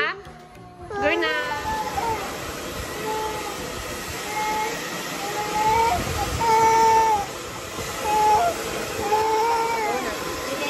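A toddler whining in drawn-out, wavering cries over a steady rushing noise.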